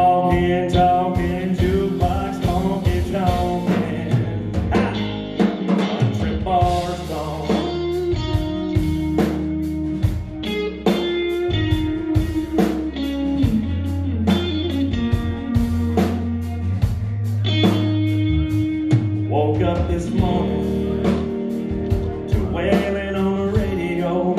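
Live country-rock band playing: electric guitars over a sustained bass line and a steady drum-kit beat.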